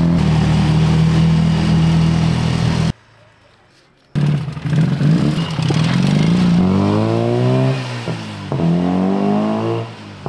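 Tuk-tuk engine running steadily under way, cutting off abruptly about three seconds in. After a quiet second it comes back, and its revs climb twice, with a drop between the climbs like a gear change.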